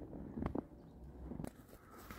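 Faint footsteps in snow, a few soft steps, over a low outdoor rumble.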